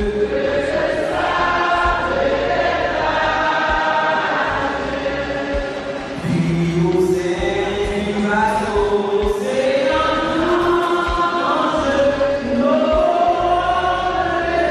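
A choir singing, several voices together holding long notes in slow phrases, with a brief break for breath about halfway through.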